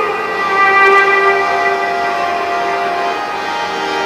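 Harmonium playing a melody of long held notes.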